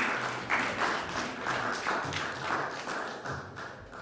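A small audience applauding, the clapping dying away near the end.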